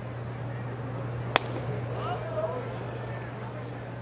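A 99 mph four-seam fastball pops into the catcher's mitt once, a single sharp crack about a second and a half in, over the steady murmur of a ballpark crowd.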